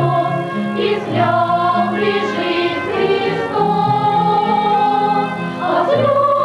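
Children's choir singing a Christmas song in unison, with a violin playing among the voices over steady held low accompaniment notes.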